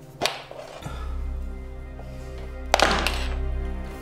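Horror film soundtrack: two sharp thuds about two and a half seconds apart, the second the louder, over sustained music tones. A low steady drone comes in just before the first second.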